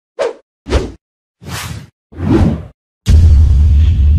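Four short whoosh sound effects, each about half a second long, with silence between them. About three seconds in, a loud, deep rumbling hit starts abruptly and carries on.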